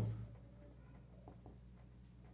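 Felt-tip marker writing on paper: faint, short scratchy strokes as letters are drawn.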